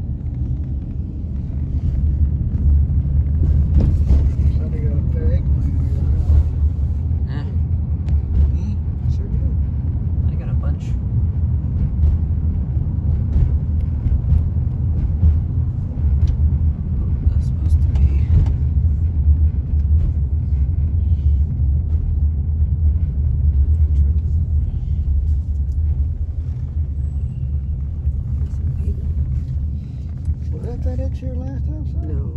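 Steady low rumble of a motor vehicle running, with faint voices now and then.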